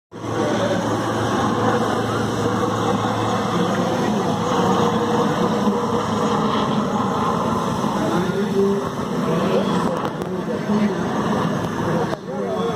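Military helicopter flying overhead, its rotor and engine heard as a steady drone under the chatter of a crowd's voices.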